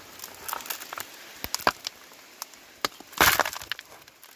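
A small hand pick striking and prying into compact river gravel: a series of sharp knocks of metal on stone with stones clinking loose, and a louder cluster of hits near the end. The gravel is packed solid and resists the pick.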